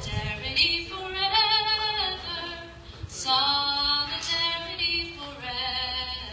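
A woman singing solo and unaccompanied into a microphone, in sung phrases with short breaks between them.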